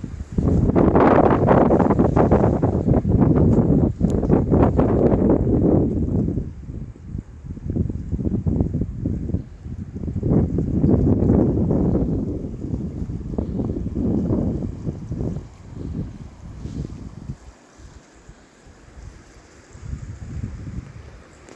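Wind buffeting the microphone in uneven gusts, a rumbling rush that swells and fades, loudest in the first few seconds.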